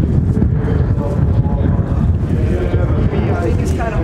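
Wind buffeting the microphone in a steady low rumble, with faint voices of people talking in the background.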